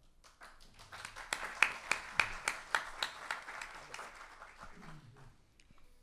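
Audience applauding. It builds over the first second, peaks with a few loud individual claps, and dies away near the end.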